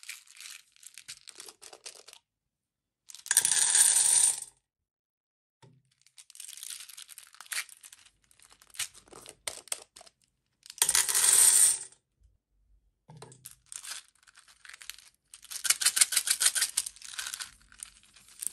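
Small round beads rattling and clinking as they are poured out of plastic bottles into the cups of a metal muffin tin. There are three long rushes, about 3 s in, about 11 s in and near the end, with lighter rattling of the filled bottles being handled between them.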